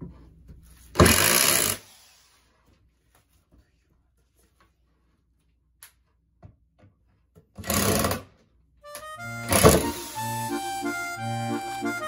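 Two short bursts of a corded electric driver running as it drives screws into wood, about a second in and again near eight seconds. Background music starts about nine seconds in, with one more short burst of the driver over it.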